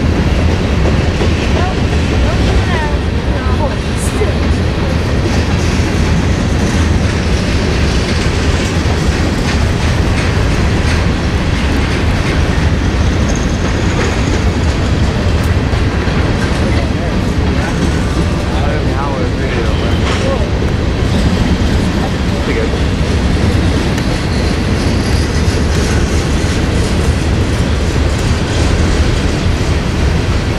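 Freight train of covered hopper cars rolling past, a steady loud rumble of steel wheels on the rails.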